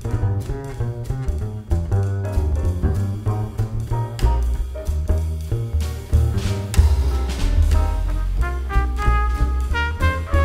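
Live jazz combo led by the double bass, with a run of low notes over light drum-kit time. Near the end the trumpet comes in with clear, sustained notes.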